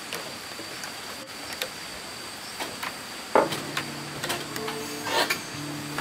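Bare footsteps on wooden stairs and floorboards: a scattering of soft knocks. From about halfway through, a steady hum joins them, shifting its pitch a few times.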